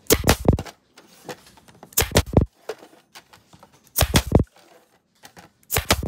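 Pneumatic flexi point driver firing four times, about two seconds apart. Each shot is a short cluster of sharp clacks as it drives flexi points into the frame to hold the backboard.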